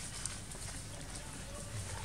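Macaques scampering over dry leaf litter: scattered light footfalls and crackling leaves.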